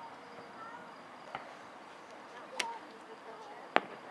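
Aerial fireworks bursting at a distance: three sharp bangs, a weak one about a third of the way in, a stronger one about two-thirds in, and the loudest near the end.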